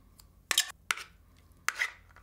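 A fork scraping the inside of an opened tin can, scooping herring in tomato sauce out into a bowl: three short scrapes.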